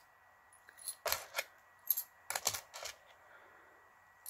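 Small beaded stitch markers clicking together as they are handled and dropped into a small organza drawstring bag: a few faint clicks in three or four short groups between about one and three seconds in.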